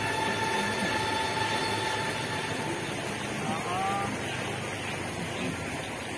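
Steady outdoor background noise with faint, distant murmuring voices. A thin high steady tone runs underneath and stops about two seconds in.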